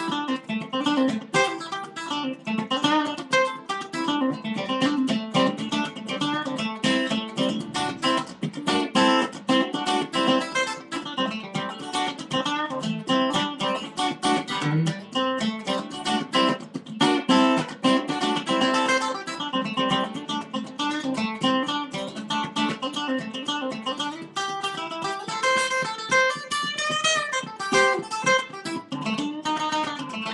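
Acoustic guitar played solo, a continuous instrumental passage of picked and strummed notes with no singing. A few bent notes come near the end.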